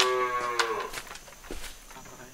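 Dairy cow mooing: one long low moo that falls slightly and trails off about a second in.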